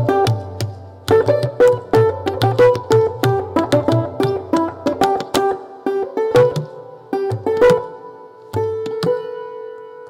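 Santoor, the Indian hammered dulcimer, played in quick runs of hammer-struck ringing notes, with tabla keeping the beat beneath. Near the end the tabla drops out and a single santoor note is left ringing and fading.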